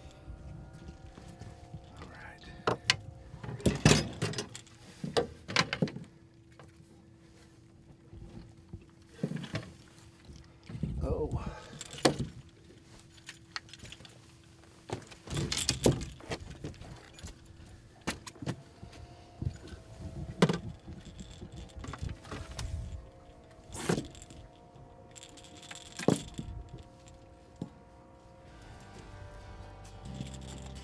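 Irregular knocks, rattles and clatter as a large catfish is handled in a landing net on a boat deck, over a faint steady hum.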